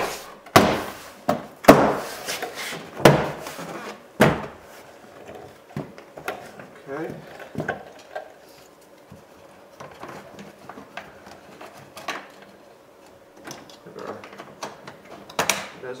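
Plastic door trim panel being slapped and pressed into place on a 1998 Chevrolet Venture's front door: about five sharp knocks in the first four seconds, then quieter clicks and handling of the panel.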